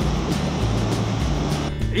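Background music over the steady rush of a small waterfall and cascading mountain stream; the water sound stops shortly before the end.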